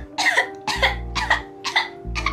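A woman coughing in short bursts, four or five about half a second apart, over background music with a steady bass line.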